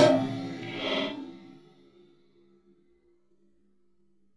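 Short edited-in musical sound effect with echo. A loud hit is already fading at the start, a second accent comes about a second in, and faint held tones die away within the next two seconds or so.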